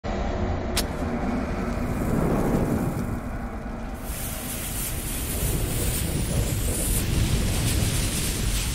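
Intro sound effects: a deep steady rumble with a brief sharp click about a second in, joined about halfway through by a rushing hiss of flames.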